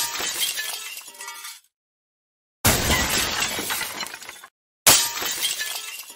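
Glass-shattering sound effect, three times: one at the start, one about two and a half seconds in, one about five seconds in. Each is a sudden crash with tinkling pieces that dies away over a second or so, with dead silence between.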